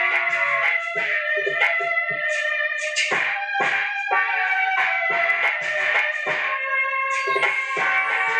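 Music: a plucked string instrument playing a melody of quick, separate notes that ring on briefly.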